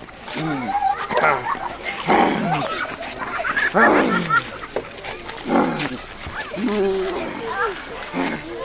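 A person's voice shouting and exclaiming in loud bursts, each sliding down in pitch, with the loudest cries about two and four seconds in.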